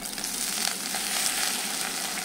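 Hot oil sizzling steadily in a clay pot as washed vallarai keerai (Indian pennywort) leaves are dropped in to fry.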